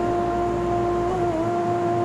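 A steady humming drone with overtones, wavering slightly in pitch about a second in.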